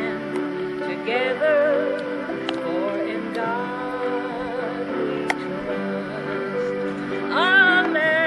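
A woman singing a slow, tender song over a recorded instrumental backing played from a portable cassette player. Her voice wavers on the held notes, and a long note rising near the end is the loudest moment.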